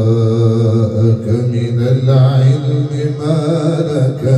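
A man's voice reciting the Quran in a slow melodic chant, holding long drawn-out notes that waver and ornament without a break.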